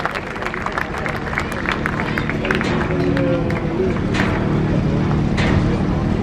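Crowd clapping, with a Ford Fiesta Rally3's engine running steadily underneath and growing louder in the second half.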